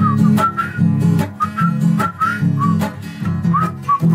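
Song accompaniment with a strummed acoustic guitar and a whistled melody in short high notes with slight slides.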